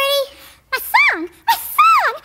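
A squeaky, high-pitched voice with no clear words: a held note at the start, then short calls that swoop up and down in pitch.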